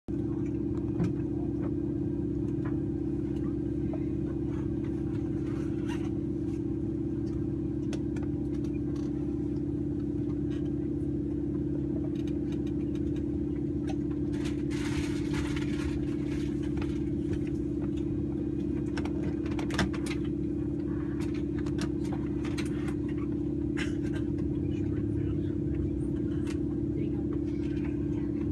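Steady machine hum with one strong low tone, heard from inside a Saab 340B+ cabin while the near propeller stands still. Scattered small clicks and a brief hiss about halfway through.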